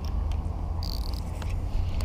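Low, steady rumble of wind on the microphone, with a brief faint high whine about a second in.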